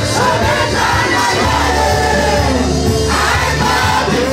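A congregation singing a worship song together over loud instrumental accompaniment.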